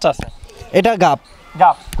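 A man speaking Bengali in short phrases, with a brief knock near the end.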